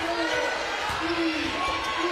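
Basketball arena crowd noise with faint voices, and a basketball being dribbled on the hardwood court as the ball handler sets up a play.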